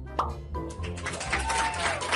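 Background music with a short rising voice exclamation of "oh" near the start, then a dense run of quick clicking and plopping sound effects.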